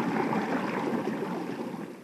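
Ambient soundtrack bed: a steady rushing, water-like noise with faint held tones beneath it, fading away over the last second.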